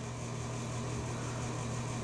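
Steady low hum with faint hiss: background room noise, with no distinct event.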